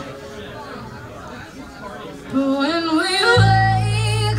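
Live band music: a quieter stretch of soft voices, then a woman's singing voice gliding upward about two seconds in, and a loud, steady low bass note coming in beneath her a second later.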